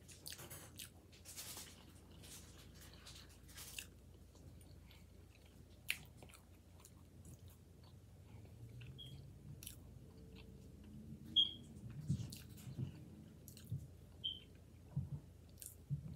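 Close-miked chewing of a soft mouthful of rice and beans, with irregular wet mouth clicks and smacks. A few quiet closed-mouth hums come in the second half.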